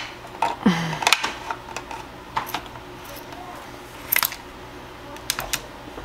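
Hand-tightened white plastic threaded ring of a KitchenAid meat grinder attachment being screwed onto the grinder housing: scattered sharp clicks and short scrapes of plastic threads and parts as it is turned. The ring is seating the food mill's strainer shaft so its spring is fully compressed.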